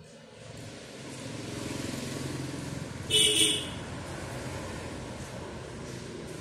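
Steady rushing noise of passing road traffic that swells over the first second or so, with a short high beep about three seconds in.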